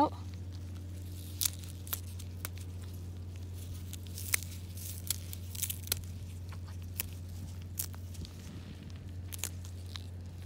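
Fresh dill stems being snapped and pulled off the plant by hand: a dozen or so short, sharp, irregular snaps with rustling of the feathery leaves, over a steady low hum.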